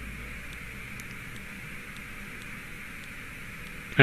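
Steady background hiss with a low hum beneath it, unchanging throughout: the recording's room and microphone noise.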